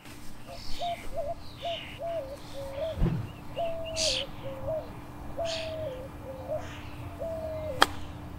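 A bird calls over and over in short whistled notes, each holding its pitch and then dropping, with a faint steady hum underneath. There is a dull thump about three seconds in, and near the end the sharp click of a golf club striking the ball on a chip shot.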